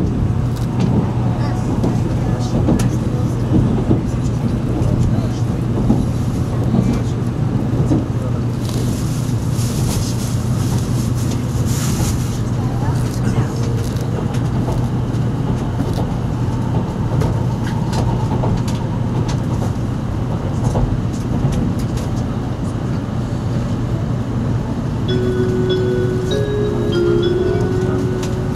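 Running noise inside a moving Shinkansen passenger car: a steady low hum and rumble from the train on the track, with scattered clicks and a brief rush of hiss about nine to twelve seconds in. Near the end a chime begins.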